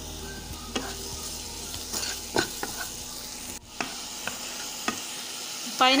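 Diced pineapple sizzling steadily in hot ghee in a non-stick pan, with scattered short scrapes and taps of a spatula stirring the pieces. The frying sound briefly drops out a little past halfway.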